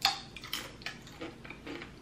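A tortilla chip bitten and chewed close to the microphone: one sharp crunch at the start, then a few softer crunches. The chip is one she calls stale.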